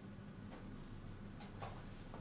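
Marker writing on a whiteboard: a few short strokes and taps, several close together near the end, over a steady low hum.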